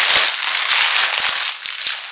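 Clear plastic garment bag crinkling and crackling as a knit top is pulled out of it, a dense run of sharp crackles that fades near the end.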